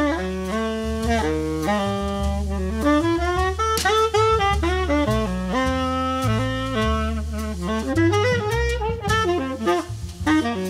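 Jazz tenor saxophone playing a continuous melodic line of held and moving notes, with double bass notes underneath.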